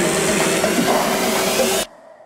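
Electronic dance music from a live DJ mix, at a noisy build-up: a hissing wash over held synth tones. It cuts off abruptly near the end, leaving a sudden near-silent break.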